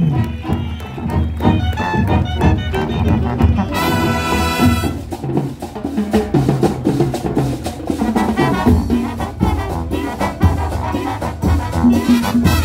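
A marching band plays live, with trumpets and trombones over a drum line keeping a steady beat. About four seconds in, the brass holds a loud chord for about a second.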